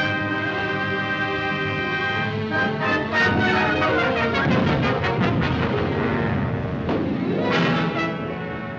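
Orchestral film score: brass over held chords, with a run of quick drum strokes in the middle.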